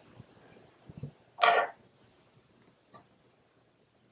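A short, loud breathy sound from the fly tier, lasting about a third of a second, about one and a half seconds in, over faint small ticks and knocks of hands working thread on a hook held in a fly-tying vise.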